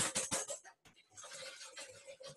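A wire whisk beating egg whites by hand in a bowl, a rapid run of even scraping strokes that whip air into the whites. The strokes are louder at first, pause briefly about a second in, then carry on more softly.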